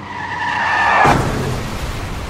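Car tyres screeching for about a second, then a sudden crash with a low rumble that slowly dies away: a car-crash sound effect.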